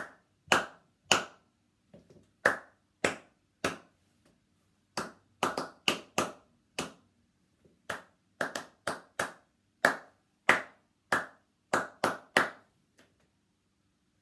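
One person clapping short rhythm patterns with bare hands, each phrase of a few sharp claps followed by a brief pause, the claps stopping shortly before the end.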